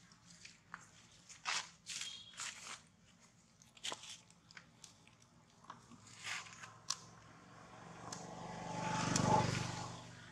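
Scattered crunches and rustles of long-tailed macaques on dry leaf litter, with a young macaque biting and chewing a piece of food. Near the end a passing vehicle swells up to a peak and begins to fade.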